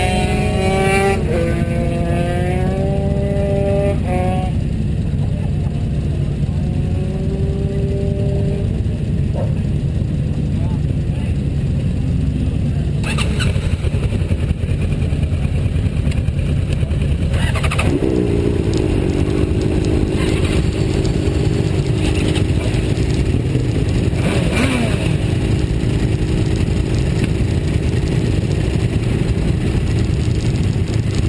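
Sport-bike engines idling with a steady low rumble. A wavering, rising-and-falling tone sounds over the first few seconds, and a steadier engine tone comes in a little past halfway.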